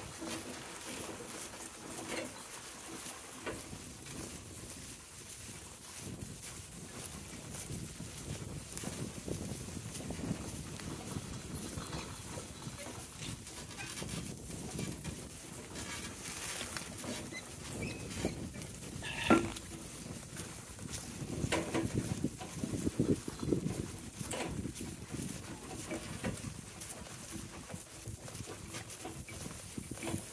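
A team of two harnessed donkeys walking and pulling a wagon across grass: steady rustle of hooves and wheels in the grass, with small clinks of trace chains and harness hardware. There is a single sharp knock a little past halfway and a busier, louder patch of low sounds soon after.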